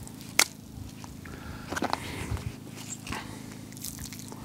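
Plastic canister-filter media basket being handled: one sharp click about half a second in, then fainter clicks and soft wet squishing from the sodden filter sponges and floss.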